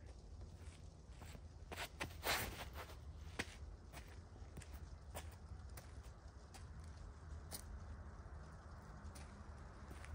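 A few footsteps and scuffs on a concrete tee pad during a disc golf drive, the strongest about two seconds in, with single light clicks scattered later, over a low steady wind rumble on the microphone.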